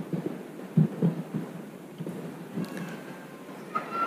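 Irregular soft, dull low thumps over the steady background noise of a large hall.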